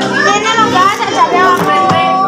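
Several children's high voices calling and chattering at once over music playing in the background.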